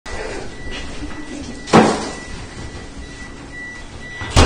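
A single sharp knock or thud a little under halfway through, the loudest thing here, over room noise with a faint steady high-pitched whine.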